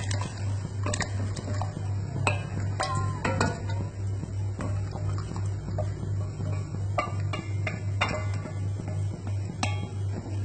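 Wooden chopsticks knocking and scraping against a metal bowl, with scattered clinks throughout, as cubes of set pig's blood are pushed off into a pot of boiling water. A steady low hum runs underneath.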